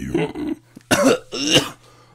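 Human beatboxing that stops about half a second in, followed by two short, loud vocal bursts from a man.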